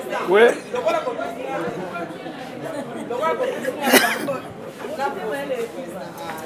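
Speech only: people talking and chattering, with one voice rising sharply about four seconds in.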